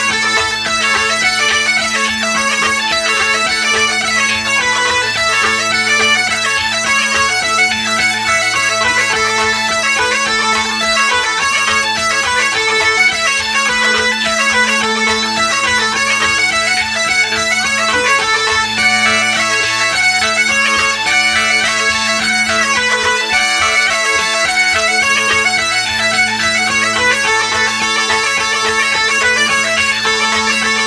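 Great Highland bagpipes playing a lively tune: the chanter melody moves quickly over steady, unbroken drones.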